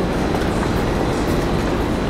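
Steady, loud rumbling city-street noise heard while walking along a busy shopping sidewalk, with low traffic rumble running throughout.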